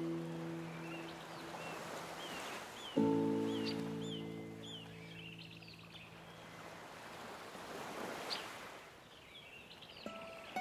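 Soft classical guitar chords, one struck about three seconds in and left to ring and fade, over a steady wash of ocean waves with small birds chirping.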